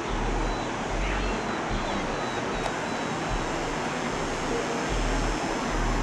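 Wind blowing on the microphone: a steady rushing noise with low buffeting gusts that come and go.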